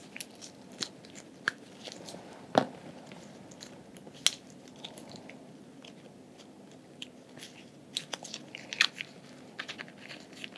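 Latex-gloved hands handling a small plastic specimen tube with a blue cap and a swab close to the microphone: irregular small clicks, taps and crackles, the sharpest about two and a half seconds in and a cluster near the end.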